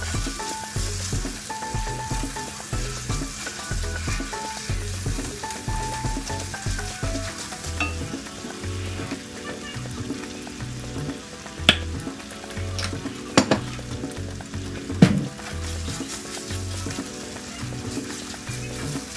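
Ground beef sizzling as it browns in a cast-iron skillet, stirred and broken up with a silicone spatula. In the second half the spatula knocks sharply against the pan a few times.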